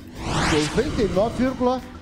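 A rising whoosh sound effect as the score is revealed on the face-comparison screen, followed by several voices exclaiming in overlapping rising-and-falling calls.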